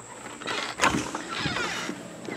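A cabin door being opened and walked through: a sharp click a little under a second in, then a knock and some rustling.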